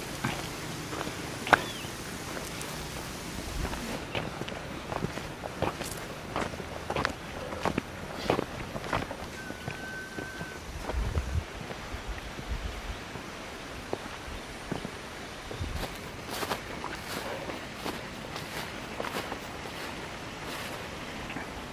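Footsteps of hikers in boots walking uphill on a concrete path: irregular steps and scuffs, about one or two a second. A brief high steady tone sounds about ten seconds in.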